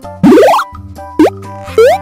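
Cartoon sound effects over bouncy children's background music: a loud rising glide about a quarter second in, then two short upward pops, one just past the middle and one near the end.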